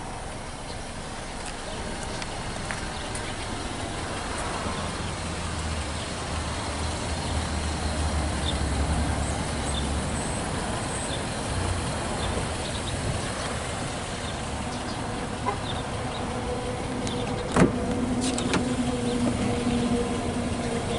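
Steady outdoor noise with a stronger low rumble in the middle, typical of wind on the microphone. Near the end a car door opens with a sharp click, and a steady low hum follows.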